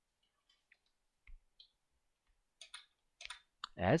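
Computer keyboard keystrokes: faint, irregular clicks as a line of code is typed.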